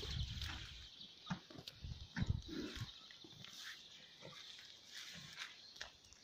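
A horse snorting and snuffling close to the microphone, in short irregular breaths, with scattered clicks and rustles underfoot.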